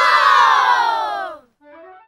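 A group of children shouting together in one long, loud held cheer that slides down in pitch and stops about a second and a half in. A short, quieter run of falling notes follows near the end.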